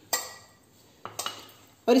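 Two light metallic clinks against a stainless-steel mixing bowl, about a second apart, each ringing briefly, while flour and oil are mixed by hand in it.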